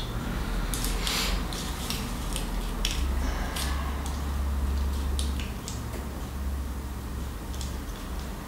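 Scattered light clicks and taps of a metal rifle cartridge being handled: picked up from the table and fitted into a caliper to measure its overall length. A low steady hum runs underneath.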